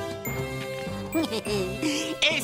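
Cartoon background music with light tinkling chimes. About a second in, high-pitched wordless vocal sounds from the small cartoon creatures join in.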